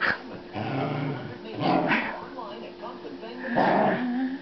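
A small dog growling and barking in play, in a few short bursts.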